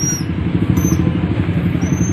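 Motorcycle engines running at low speed in a traffic jam, a steady low rumble, with a brief thin high-pitched squeal near the end.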